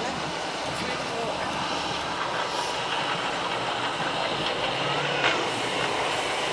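Heavy recovery truck's 440-horsepower diesel engine running steadily as the truck is manoeuvred into position behind the vehicle to be recovered.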